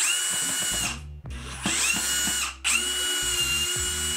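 Cordless drill-driver whining in three short runs, driving screws into a plywood shelf, with the motor's pitch holding steady through each run.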